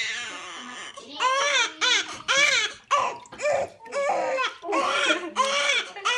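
Newborn baby, one week old, crying in a run of short rising-and-falling wails, about two a second, starting about a second in after a longer cry fades out.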